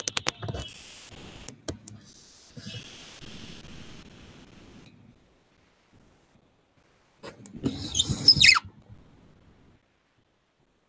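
Handling noise picked up by an open video-call microphone: a quick run of sharp clicks in the first two seconds, then a loud scraping, rustling burst with a short falling squeak about eight seconds in.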